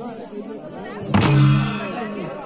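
A single heavy beat on a large kettle drum, struck with a stick together with a cymbal clash, a little over a second in, ringing on afterwards; it is one stroke of a slow, spaced beat of ritual drumming for a Dhami dance, with crowd voices underneath.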